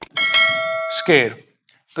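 A click, then a bell-like ding from a subscribe-button animation, ringing for about a second and fading, followed by a short falling tone.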